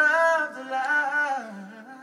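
Male voice singing a wordless, wavering vocal run, loudest at the start and trailing off in the last half second, over held electric keyboard chords.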